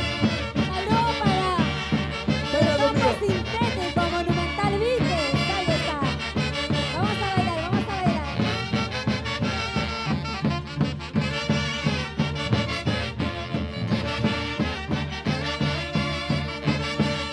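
Live Andean orquesta típica playing a Santiago dance tune: saxophones and clarinets carry the melody over a steady beat.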